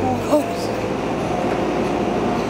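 A vehicle's engine running steadily in the street, with a thin high whine held over a noisy rumble.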